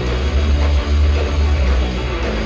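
Live rock band playing, electric guitar over a loud, heavy bass.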